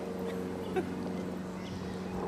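A steady low hum, one even tone with fainter higher tones above it, over soft outdoor background noise, with a single brief soft sound a little under a second in.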